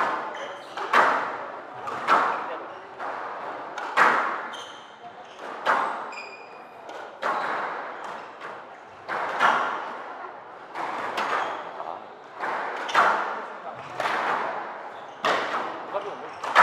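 A squash rally: the ball is struck by the rackets and hits the court walls with sharp cracks about once a second, each echoing in the hall-like court. A short high squeak comes about six seconds in.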